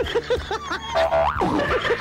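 Comic cartoon-style sound effects played on air: a quick run of short, springy, bouncing pitch glides over a steady music bed.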